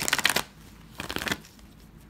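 A deck of oracle cards riffle-shuffled on a table: two quick bursts of rapid card flutter, the second about a second after the first.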